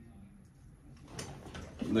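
Near silence for about a second, then a man's voice starting up near the end.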